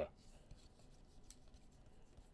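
Faint slides and clicks of glossy baseball trading cards being shuffled from the front of a hand-held stack to the back, a few light ticks scattered through it.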